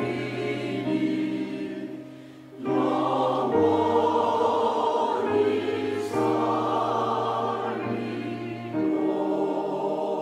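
Mixed choir of men's and women's voices singing a slow hymn in Korean with piano accompaniment, holding long notes, with a short breath between phrases about two seconds in.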